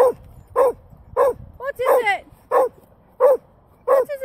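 A dog barking over and over at a steady pace, about seven barks, roughly one and a half a second.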